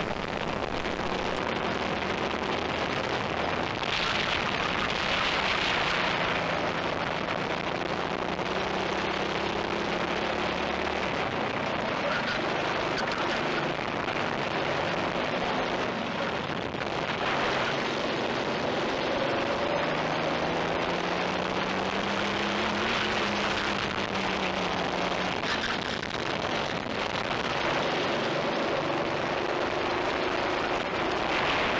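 Racing kart engine recorded by an onboard camera, its pitch rising and falling with the throttle through corners and straights, under a constant rush of wind noise on the microphone.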